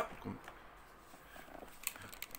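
Faint handling of a cardboard toy box as it is picked up to be opened, with one light tap near the end.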